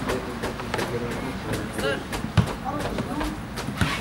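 Outdoor football-pitch ambience: scattered distant voices of players and onlookers, with many light knocks and clicks and a sharp thump about two and a half seconds in.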